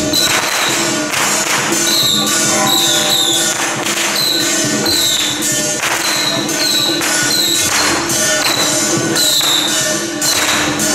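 Ritual procession percussion: hand cymbals clashing in a steady beat, roughly once a second, over sustained metallic ringing.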